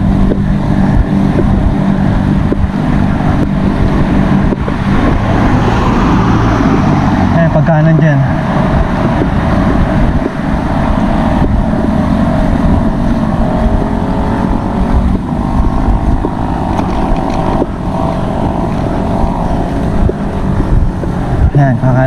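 Wind buffeting the camera's microphone on a moving bicycle: a loud, steady rumble.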